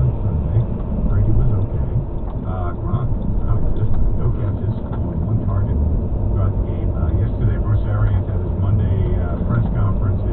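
Steady low engine and road rumble inside a moving car, as picked up by a dashcam's microphone.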